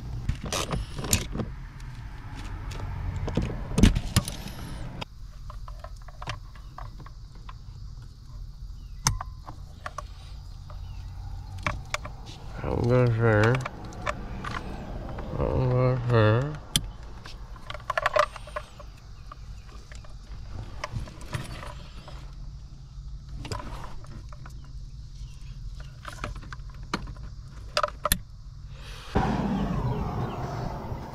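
Scattered clicks, knocks and rattles of plastic dashboard and HVAC parts and wiring connectors being handled under the dash of a 2016 Honda Pilot, over a steady low hum that is louder for the first five seconds. Twice, about 13 and 16 seconds in, a short wavering voice-like sound.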